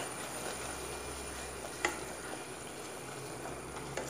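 Tomato and spice masala frying in oil in a steel pot, a steady sizzle as it is stirred with a wooden spoon, with one sharp tap of the spoon against the pot a little under two seconds in.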